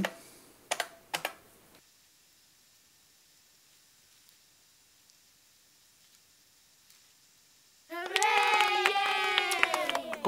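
Computer keyboard keystrokes: two quick pairs of key clicks about a second in, then near silence. Near the end a loud, long, wavering pitched tone begins.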